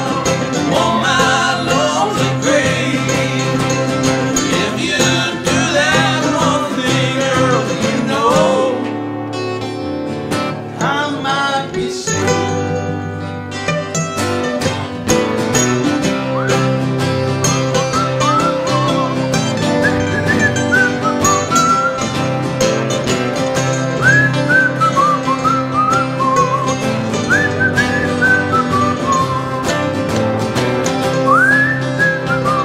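Acoustic country band playing, strummed acoustic guitars and mandolin. After a brief quieter stretch near the middle, a whistled melody with upward-swooping notes comes in over the band.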